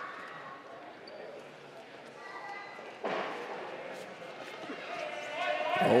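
Arena room sound during a grappling exchange: faint distant voices and light thuds and slaps of bodies and feet on the mat. A sudden louder noise comes in about halfway through, and near the end a commentator's excited voice rises.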